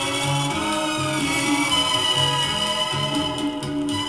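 A pop song with band accompaniment playing from a 45 rpm vinyl single on a turntable. Held notes ride over a steady, repeating bass line.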